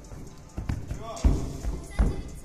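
A gymnast's bare feet and hands thudding on a sprung gymnastics floor during a floor routine: a quick run of thumps, the heaviest about a second and a quarter in.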